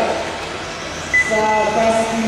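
Electric 1/12-scale RC race cars running, their motor whine falling in pitch at the start as a car slows. It comes back steady after a quieter second. A short high beep sounds about a second in.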